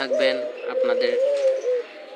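Caged ringneck doves cooing: drawn-out coos that waver in pitch, one after another.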